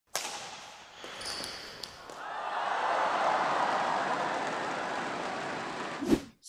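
Title-graphic sound effects: a sharp impact hit just after the start, a few light clicks, then a noisy whoosh that swells up about two seconds in and holds, slowly fading.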